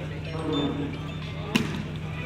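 A volleyball struck by hand: one sharp slap about one and a half seconds in, among shouting voices of players and spectators over a steady low hum.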